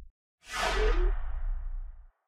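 Whoosh sound effect of an animated logo sting. The tail of one whoosh ends at the very start, then after a short gap a second whoosh with a low rumble comes in about half a second in and fades away over about a second and a half, cutting off at the end.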